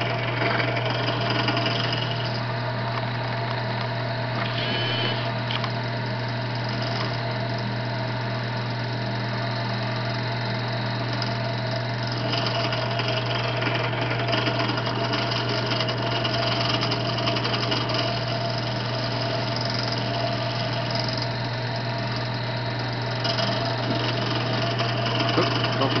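Benchtop drill press running steadily with a constant motor hum, its twist bit being eased slowly through a soft aluminium engine block lubricated with white lithium grease, about a quarter inch short of breaking through.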